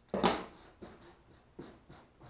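Handling noise from the freshly covered package tray and scissors: one loud, brief rustle just after the start, then a few fainter rustles and knocks as the scissors are set down and the tray is lifted from the cloth-covered table.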